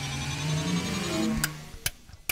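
Short musical logo sting: a rising synth sweep over an ascending run of low notes that fades out about a second and a half in, followed by a couple of sharp clicks.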